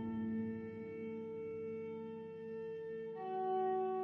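Slow, sad solo piano music: a held chord slowly fading, with soft new notes coming in about three seconds in.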